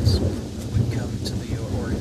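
Wind buffeting the microphone: a steady, loud low rumble, with a man's speech faintly audible under it.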